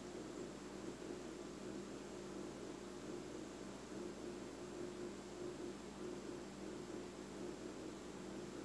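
Low steady hiss with a faint, even hum underneath: room tone, with no distinct sound events.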